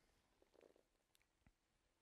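Near silence: room tone, with a few very faint ticks.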